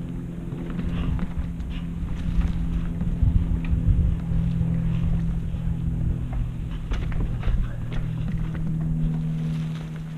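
Mountain bike ridden along a dirt forest trail, heard from a camera on the bike or rider: a heavy low rumble of wind and tyres, strongest a few seconds in, with scattered clicks and knocks as the bike rattles over the bumps. A steady low hum runs underneath.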